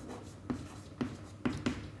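Chalk writing on a chalkboard: a few short scratchy strokes and taps, roughly half a second apart, as symbols are written.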